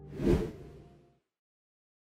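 A single cartoon whoosh sound effect that swells and fades within the first second.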